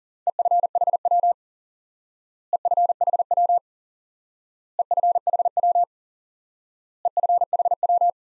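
Morse code tone, a steady mid-pitched beep, sending 'EFHW' (end-fed half-wave) four times at 40 words per minute. It comes as four quick groups of dots and dashes about two seconds apart.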